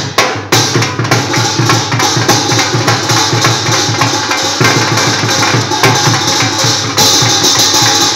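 Drum beaten in a fast, steady rhythm, with a brighter layer joining about seven seconds in.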